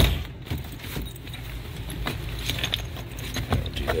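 Metal tools and fittings clinking and rattling irregularly as a hand rummages through a soft tool bag for an air tool.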